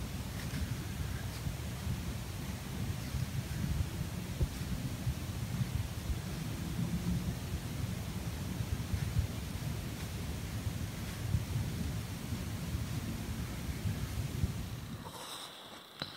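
Wind buffeting the camera microphone: a steady low rumble with a faint hiss over it, which stops near the end.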